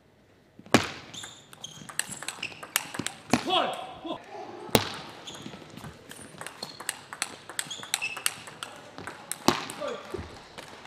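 Table tennis rallies: the ball clicking sharply off rackets and table in quick irregular succession, starting with the serve just under a second in.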